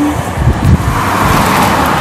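Road traffic noise from a motor vehicle passing close by. It rumbles at first, then swells about a second in.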